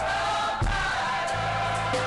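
Gospel choir singing with band accompaniment: held bass notes under the voices and a drum hit about half a second in.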